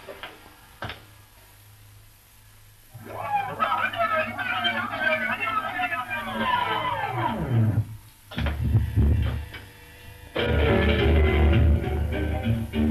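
Playback of a test cut from a Philips-Miller optical film recorder: after a quiet start with a single click, music comes in about three seconds in, its pitch sliding down near eight seconds, then a low hum and music again from about ten seconds.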